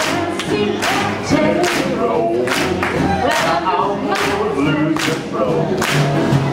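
Live swing jazz band playing with a singer, the drums keeping a steady, even beat.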